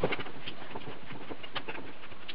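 A copper coil being pried and lifted out of a microwave oven transformer's steel core, with soft scraping and scattered small clicks as the heat-softened varnish lets go.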